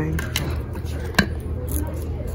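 Two sharp clicks, about three-quarters of a second apart, as a cardboard door hanger is handled and lifted off a metal display hook, over a steady low hum of store background.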